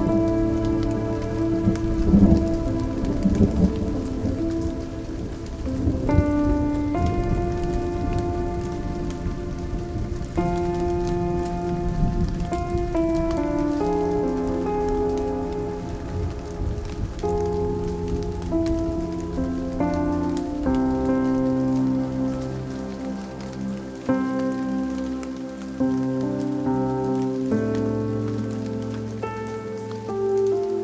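Steady rain with a slow music track of held chords laid over it, the chords changing every second or two and a low bass line coming in about two-thirds of the way through. A low thunder rumble sounds in the first few seconds and dies away.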